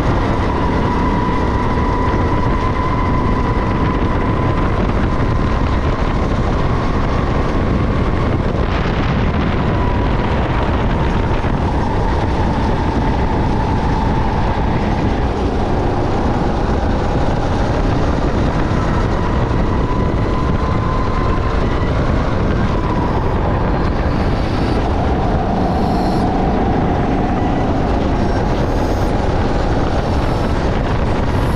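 Sodi SR5 rental go-kart engine running hard at racing speed, its pitch wavering a little up and down through the corners. It sits over a constant rumble of wind and road noise.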